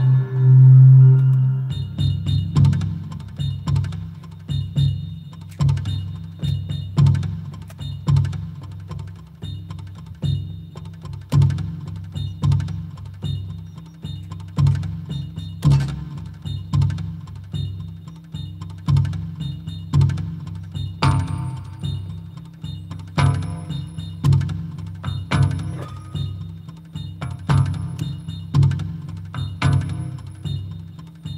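Korg Wavedrum electronic hand drum played on a random preset with a deep, pitched, monstrous tone: one long boom to open, then hand strikes in a loose rhythm of about two or three a second, each with a low pitched thump and a faint high ring.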